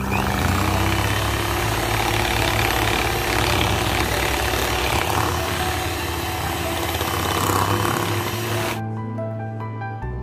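Electric hand mixer running, its beaters whisking cream cheese and liquid whipping cream in a glass bowl, then cutting off suddenly about nine seconds in.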